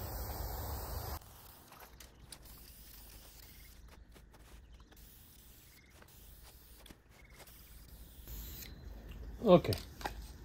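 Aerosol can of vinyl and fabric spray hissing steadily as it is sprayed, then cutting off abruptly about a second in, followed by quiet with a few faint clicks. Near the end a shorter hiss comes again, then a brief voice.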